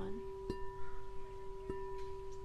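Crystal singing bowl tuned to G at 432 Hz ringing with a steady, pure tone and high overtones, tapped lightly twice about a second apart so the ring swells again.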